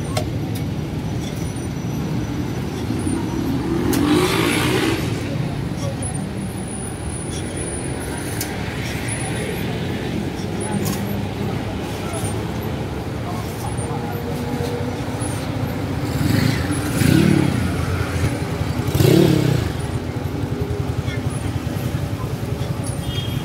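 Busy night-market street ambience: a steady din of crowd voices mixed with road traffic and motorbikes, with a few louder swells about four seconds in and twice near the end.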